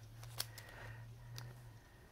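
Faint handling of a clear plastic stamp sheet in its packaging: two light clicks about a second apart, over a low steady hum.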